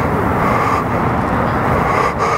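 Steady, loud vehicle-like rumble and hiss with no distinct impacts.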